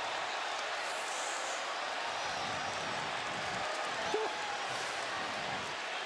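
Steady crowd noise from a basketball arena audience, an even hubbub.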